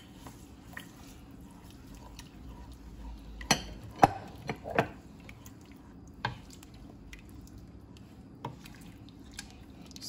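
Wooden spoon stirring rice into a tomato and stock liquid in a stainless steel pot. A cluster of sharp knocks of the spoon against the pot comes about three to five seconds in, loudest around four seconds, and a couple of single knocks follow later.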